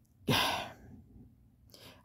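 A woman sighs: one short breathy exhale about a quarter second in, then a faint breath in near the end.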